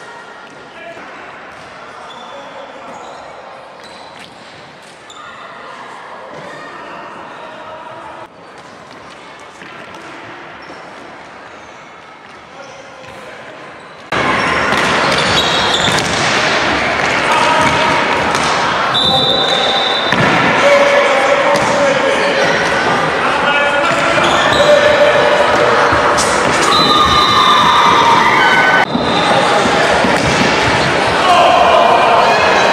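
Indoor hockey game in an echoing sports hall: voices calling out over repeated knocks of sticks on the ball. Faint for about the first half, then much louder from about halfway through.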